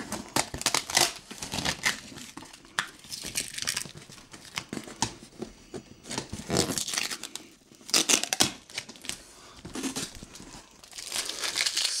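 A cardboard box being opened by hand: packing tape slit and torn off the seam, with the cardboard flaps scraping and crinkling in irregular bursts and a longer ripping stretch near the end.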